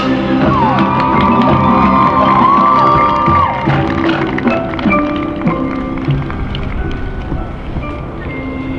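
High school marching band playing: held chords with several notes that slide up, hold and fall away over the first half, then a quieter, thinner passage with scattered light percussion hits.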